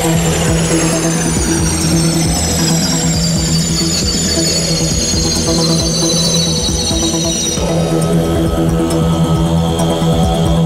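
Live electronic synthesizer music. A steady low drone and held chord sit under a cluster of high sliding tones that glide slowly downward, and the high tones cut off about three-quarters of the way through.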